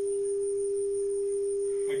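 Steady 400 Hz sine tone from a multimedia speaker driven by a smartphone function-generator app, a single unwavering pure tone.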